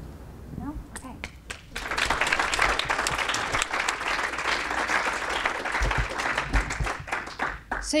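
Audience applauding, starting about two seconds in and dying away near the end.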